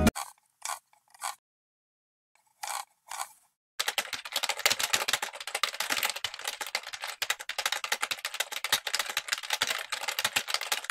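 A few short scratchy sounds in the first three seconds, then, from about four seconds in, fast, continuous typing on a computer keyboard: many key clicks a second.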